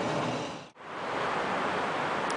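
Steady rushing background noise, which drops out suddenly for a moment just under a second in and then comes back.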